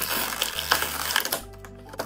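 Thin clear plastic packaging tray crinkling and crackling as accessories are pried out of their blister slots, easing off a little over halfway through. Background music plays along with a steady bass line.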